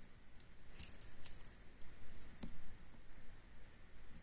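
Faint, scattered metallic clicks and ticks of a hook pick and tension wrench working the pins in the keyway of an M&C Color cylinder lock (Oxloc-branded) as it is being picked, with a small cluster of clicks about a second in and the sharpest click about halfway through.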